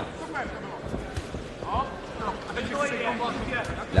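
Fight-arena crowd noise: scattered voices and shouts over a steady hubbub, with a few short dull thuds from the ring.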